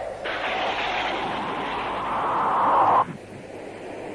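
A loud rushing noise, with no pitch to it, comes in about a quarter second in, swells until it is loudest near the end, then cuts off abruptly about three seconds in, leaving a fainter noise behind.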